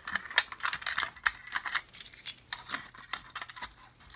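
A ring of keys jangling and clicking as a key works the lock of a Simplex 2099-9754 fire alarm pull station to close it. Irregular metallic clicks and jingles, busiest in the first two seconds, then sparser.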